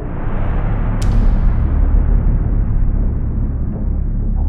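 Cinematic title-card sound design: a deep rumbling drone that starts abruptly, with a sharp impact hit about a second in whose hiss trails off slowly.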